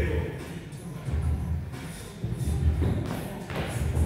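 Dull thuds of two men dropping to and pushing off rubber gym flooring during burpees, over background music with a heavy bass pulse about once a second. The sharpest thud comes near the end.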